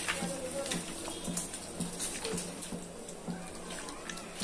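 A hand mixing raw chicken pieces with salt, turmeric and chilli powder in a steel bowl, with faint background music.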